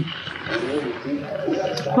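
Quiet, indistinct voices in a small room.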